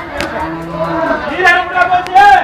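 An elephant calling, a pitched, wavering call that is strongest near the end, with people's voices mixed in.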